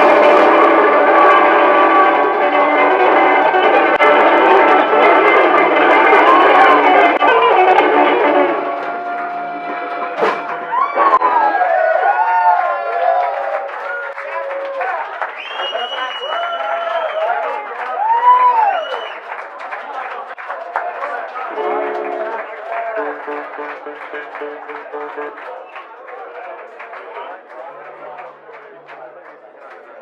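Live blues band playing in a bar: the full band loud for about the first eight seconds, then a thinner passage of bending, wavering notes over sparse backing, fading away toward the end as the song winds down.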